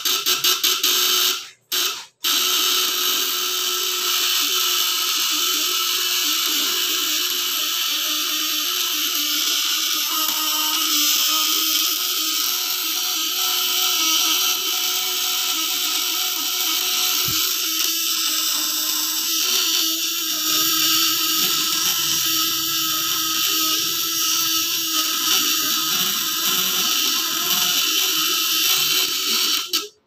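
Homemade platina (contact-breaker points) fish-stunner inverter running on 24 V from two batteries, its vibrating points buzzing steadily while lighting an incandescent bulb load. The buzz cuts out twice briefly near the start.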